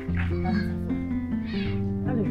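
A cat meowing twice over steady background music.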